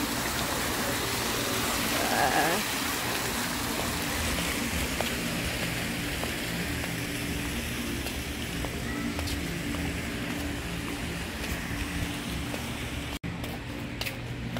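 Fountain water pouring off the rim of an upper tier and splashing into the basin below, a steady rushing splash. A brief voice is heard about two seconds in.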